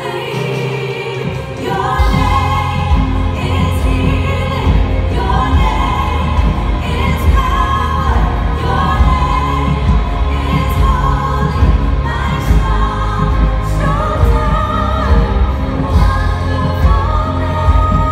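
Two women singing a contemporary worship song live with a small band. A heavy, pulsing bass beat comes in about two seconds in and the music gets louder.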